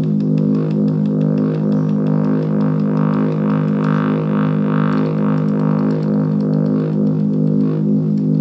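Electronic step-sequenced synth pattern from a DIY micro sequencer prototype: a buzzing, low repeated-note line with fast ticks on top. It grows brighter in the middle and dulls again near the end as a setting on the sequencer is changed.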